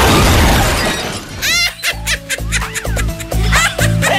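A loud crash sound effect that fades out over the first second, followed by upbeat background music with a steady bass beat, a melody and a few quick swooping tones.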